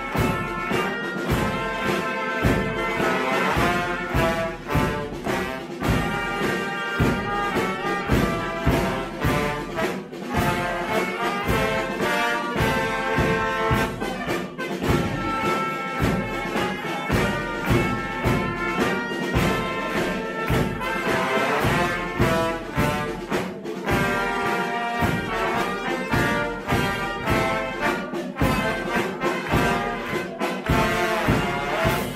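A brass band playing a tune: trumpets and trombones over a steady beat of bass drum and snare drum.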